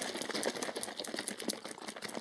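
A plastic cup of chilled ready-to-drink latte being shaken hard by hand: a fast, irregular run of clicks and rattles.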